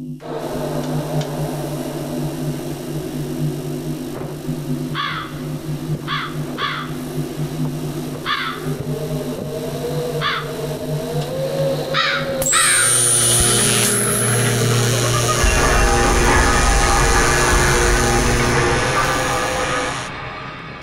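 A crow cawing about seven times, in short separate calls, over a steady low drone of the film's score. Near the middle the caws give way to a louder, noisy swell of sound with a high rising whine and then a deep rumble underneath.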